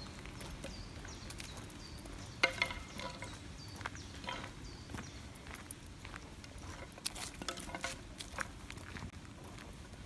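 A dog handling a stick on asphalt: scattered light clicks and scrapes, with one sharper knock about two and a half seconds in and a cluster of clicks around the seven-second mark. Faint short chirps repeat in the first half.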